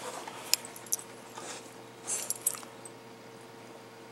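Small dog's metal collar tags clinking a few times as it shifts on its toys, with a short rustle of it mouthing and moving against the tennis balls and rope toy.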